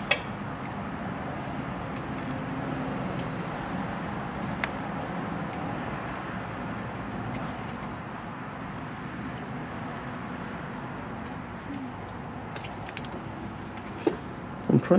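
Steady low background noise with a few light clicks and taps as parts are handled at the engine's cam cover.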